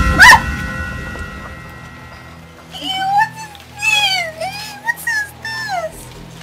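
A sudden loud boom with a low rumble dying away, then a high-pitched voice crying out in several drawn-out, wavering exclamations over background music.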